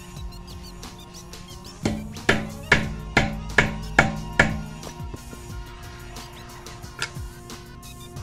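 Hammer striking a chisel set in the hub-side indents of a BMW 328i rear wheel, to break the wheel free from the hub it is stuck to: seven sharp strikes about two a second, then one more near the end, over background music.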